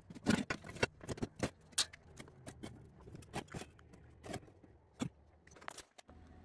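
Irregular light metallic clinks and knocks from a 3 kW e-bike hub motor and steel mounting brackets being handled and set in place on a steel work frame, roughly a dozen and a half small hits spread unevenly.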